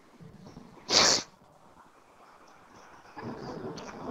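A single short, sharp burst of hissing noise about a second in, much louder than the faint background.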